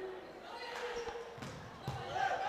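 Volleyball being struck a few times, short sharp knocks, over the steady background noise of the crowd in a large sports hall.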